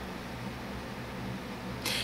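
Quiet, steady room tone: a low hum under a soft hiss, with no distinct events.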